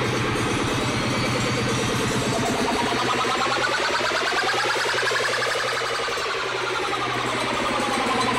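Live rock band playing the end of a song, with a pitched sound that glides up and then back down over the second half.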